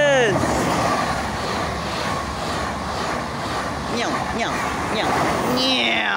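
TGV high-speed train passing close along a platform at speed: a steady rush of air and wheel noise. A person shouts with a falling pitch at the start and again near the end.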